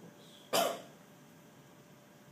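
A single short cough.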